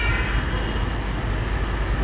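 Steady low rumble with an even hiss of background noise, with no distinct event.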